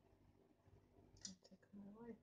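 Near silence: quiet room tone, with one soft click a little over a second in and a brief murmur of voice near the end.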